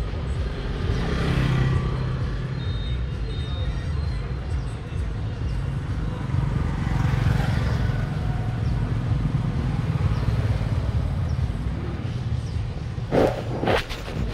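Street traffic: a steady low rumble of motor vehicles, swelling as vehicles pass about a second in and again at about seven seconds. A few sharp clicks and knocks come near the end.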